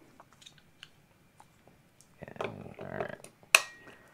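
Plastic battery packs being handled and snapped onto the battery plates of small wireless video transmitter units. There are faint ticks and fumbling, then one sharp click near the end as a battery locks into place.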